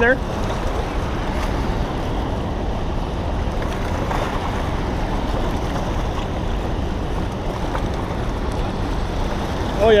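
Fast, turbulent water rushing out below a dam spillway, a steady noise with no breaks, with wind buffeting the microphone.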